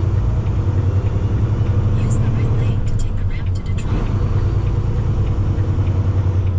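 Volvo semi-truck's diesel engine running under way, heard inside the cab as a steady low drone with road noise, and a few short sharp clicks a couple of seconds in.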